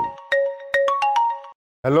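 Mobile phone ringtone: a short, marimba-like melody of struck notes that cuts off suddenly about a second and a half in, as the call is answered.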